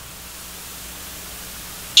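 Steady, even hiss of room tone and recording noise, with nothing else sounding.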